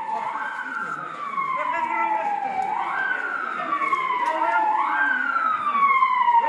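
Vehicle siren sounding a repeating cycle: each cycle jumps up quickly in pitch and then slides slowly down, about every two seconds, three times, growing a little louder near the end.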